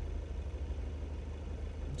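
An LDV T60 ute's turbo-diesel engine idling, a steady low hum heard from inside the cabin.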